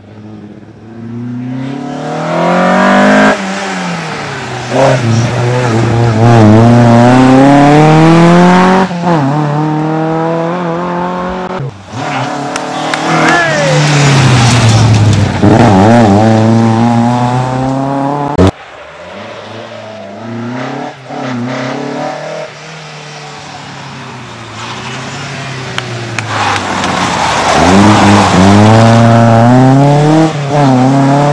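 Rally saloon car driven hard on a tarmac stage: the engine revs up through the gears again and again, its pitch climbing and dropping with each shift. Several passes are cut together, with a quieter stretch about two-thirds of the way in.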